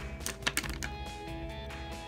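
A quick cluster of sharp clicks and taps from about a quarter second to just under a second in, from makeup products being handled and set down, over background music.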